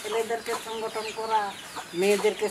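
Chickens clucking in a series of short calls.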